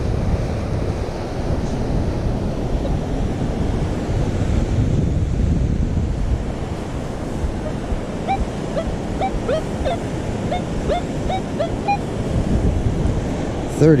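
Wind buffeting the microphone over steady surf noise. In the second half, a metal detector gives a run of short target beeps, about two a second and slightly varying in pitch, as its coil is swept over a deep buried target whose reading keeps jumping around.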